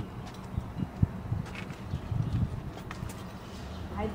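Irregular clunks, knocks and scuffs of a metal-framed gate with wooden slats being pushed and climbed over, with a sharp click about a second in.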